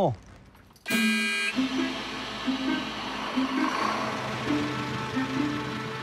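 A brief horn toot about a second in, followed by background music with a slow stepping melody.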